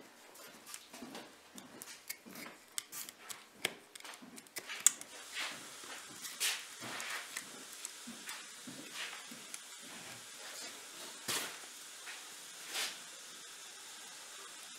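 Knife blade cutting and scraping deer hide off the skull around the base of an antler, in irregular short scrapes and clicks.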